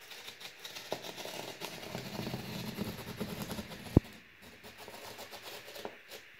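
A utility knife blade drawn along a straight edge, slicing through corrugated cardboard in one long continuous cut. There is a single sharp knock about four seconds in, after which the cutting goes on more faintly.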